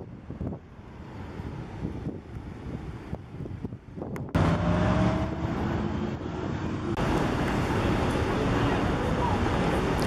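Road traffic on a busy multi-lane street: passing cars' engines and tyres, with some wind on the microphone. The noise grows suddenly louder about four seconds in.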